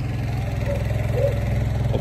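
Engine running steadily with a low, even pulse.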